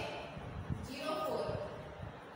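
A woman's voice, one brief spoken syllable about halfway through, over the light scratching and tapping of a marker writing on a whiteboard.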